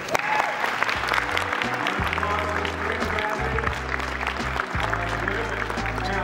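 Audience applauding, a dense patter of claps, over background music with a low bass line.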